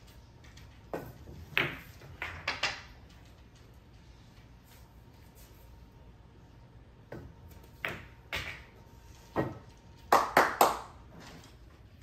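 Pool balls clicking on a 9-foot table in two shots about six seconds apart: each has a sharp cue-tip strike on the cue ball, then balls knocking together and into a pocket. Near the end come three loud knocks close together as the cue is laid down on the table.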